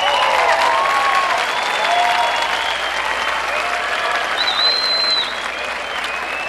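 Audience applauding steadily, with a few voices calling out over it.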